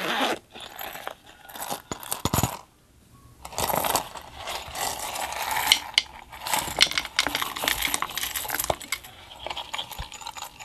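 A hard plastic character-shaped case handled by hand, giving quick clicks, taps and light rattling of plastic on plastic and glass, with a brief pause about three seconds in.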